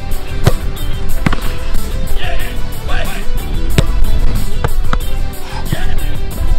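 Background guitar music runs throughout, with about five sharp thuds of a football being struck, bouncing and caught, and a few short shouts in between.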